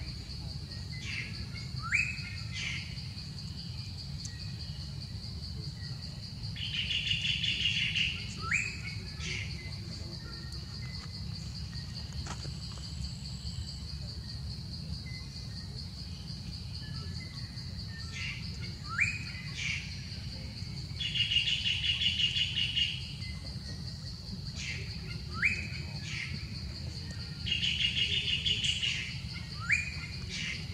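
Wild birds calling: short upward-sweeping notes and a repeated trilled call of about a second and a half, heard three times. Under them runs a steady high-pitched insect-like hum.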